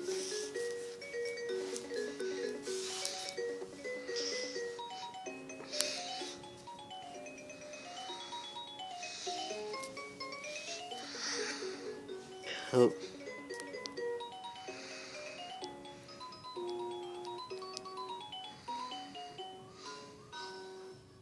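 Baby Einstein Count & Compose Piano toy playing its final built-in melody: an electronic tune of short, quick single notes stepping up and down.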